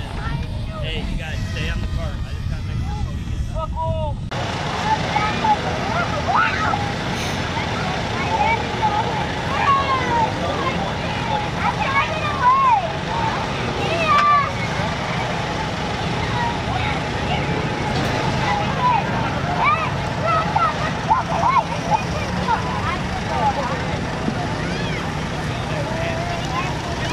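Crowd of onlookers chattering, many overlapping voices, over a steady low engine rumble; the sound changes abruptly about four seconds in, and the chatter is thicker after that.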